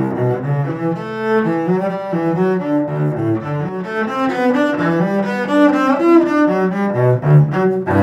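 Cello played with the bow in a fast passage of short notes, several notes a second.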